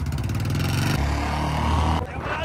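Royal Enfield Bullet single-cylinder motorcycles with loud exhausts accelerating hard side by side in a race; the engine note drops about a second in.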